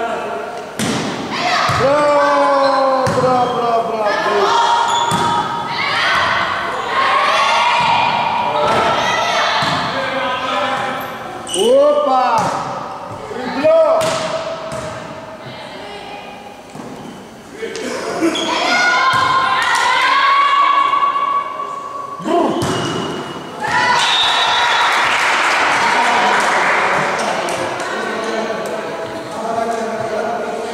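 Volleyball being struck and hitting the gym floor with sharp thuds, amid high-pitched shouts and calls from the players and spectators. Near the end comes a burst of louder, denser crowd noise, like cheering at the end of the rally.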